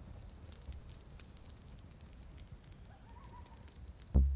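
A quiet pause: faint low background hum with a few soft clicks, and a brief faint wavering high note about three seconds in.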